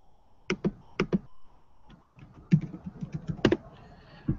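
Typing on a computer keyboard: a few separate keystrokes in the first second, then a quicker run of about a dozen keys near the end, as a URL is entered in a browser's address bar.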